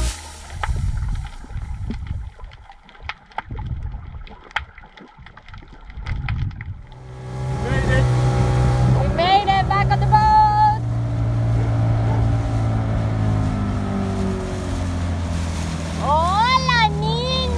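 Underwater sound from a snorkeling camera: low water rumble with scattered clicks. From about seven seconds in, a dinghy's outboard motor runs steadily underway, and a voice calls out briefly over it.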